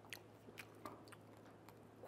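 Faint crunching of a person chewing a crispy scorched-rice cracker (nurungji) made with kamut and brown rice, a few small crackles spread through an otherwise very quiet stretch.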